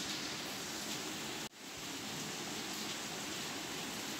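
Steady background hiss with no distinct events. It drops out briefly about one and a half seconds in, where the recording is cut.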